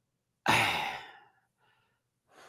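A man's sigh: one breathy exhale into the microphone, starting about half a second in and fading away within a second.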